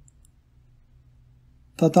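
A pause in a person reading aloud: faint low room hum with a faint click just after the start, then the reading voice resumes near the end.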